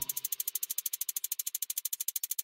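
A rapid, even percussion rattle ticking about a dozen strokes a second, playing on its own in a break in the music while the bass and drums drop out.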